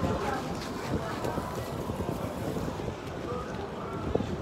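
Wind noise on a phone microphone, a steady low rumble, with faint voices in the background.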